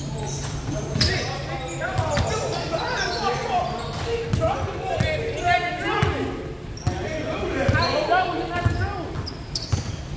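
Basketball bouncing on a hardwood gym floor, with irregular dribbles and thuds echoing in a large hall.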